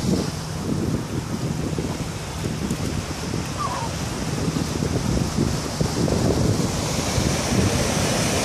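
Small waves breaking and washing onto a sandy beach, with wind buffeting the microphone in a steady low rumble.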